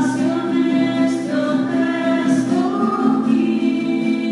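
Voices singing a slow hymn, holding long notes that glide gently from one pitch to the next, with a few soft sung consonants between phrases.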